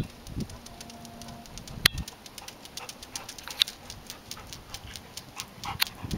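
Light irregular clicks and taps on concrete, coming thicker near the end as a golden retriever trots up close, typical of a dog's claws on pavement. A brief faint steady low tone sounds about half a second in.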